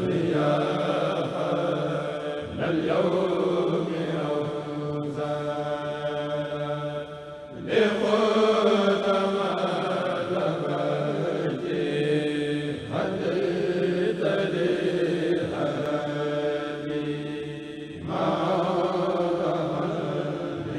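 A kurel, a group of men, chanting a Mouride qasida (khassida) together at microphones. The chant runs in long sustained phrases, each about five seconds, with brief breaks for breath between them.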